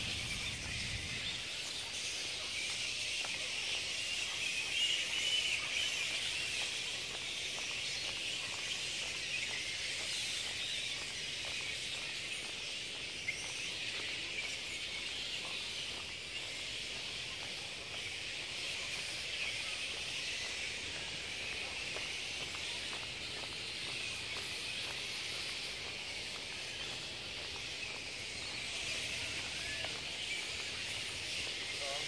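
A colony of flying foxes (large fruit bats) calling together: a continuous high-pitched din of many overlapping squeaks and chatters, swelling slightly a few seconds in.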